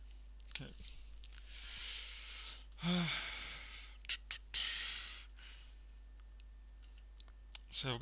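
A man sighing and breathing out heavily three times, the middle sigh voiced and loudest, with a few light clicks between.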